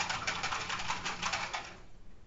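A rapid run of light clicks, about ten a second, fading out near the end, over a faint low steady hum.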